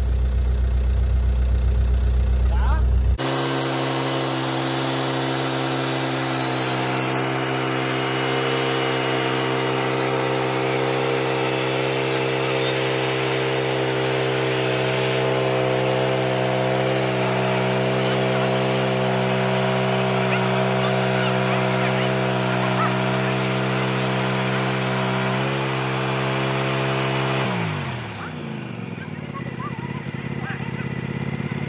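Wood-Mizer LX150 portable sawmill running steadily under load as its band blade cuts along a log, an even engine hum under a hiss of sawing. Near the end the engine winds down, its pitch falling as the cut finishes. It is preceded by a low rumble for the first few seconds.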